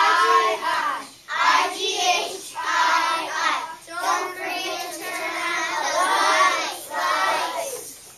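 A group of young children chanting a phonics chant for the 'igh' sound together in a sing-song voice, in short phrases with brief pauses between them.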